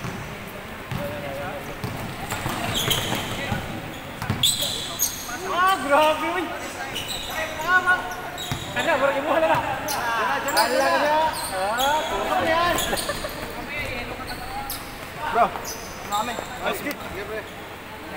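Basketball bouncing repeatedly on a wooden gym floor, with players shouting and calling out, mostly in the middle of the stretch.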